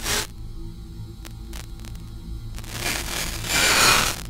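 Experimental electronic noise music: a steady low synthesizer hum under static-like noise, with a short burst of hiss at the start, a few faint clicks in the middle, and a hiss that swells over the last second and a half to its loudest, then cuts off.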